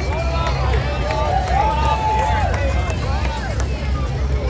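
Crowd voices calling out and whooping, overlapping, with one long held call in the middle, over a steady low rumble.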